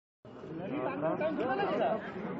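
Several men's voices chattering over one another, after a brief total dropout of sound at the very start.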